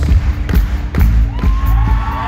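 Live rock band playing loudly through a theatre PA, with heavy drum and bass thuds about twice a second under a held keyboard note. Crowd whoops and cheers rise near the end.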